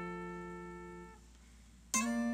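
Guitar chord ringing out and fading, then stopped about a second in; after a short gap a new chord is struck near the end, the slow opening of the song.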